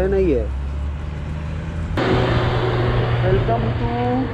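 Motorcycle engine idling steadily under a few spoken words; about halfway the idle's pitch jumps higher and a noisy rush of air joins it.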